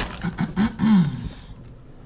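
A woman clearing her throat: a few short voiced sounds that rise and fall in pitch, loudest just under a second in.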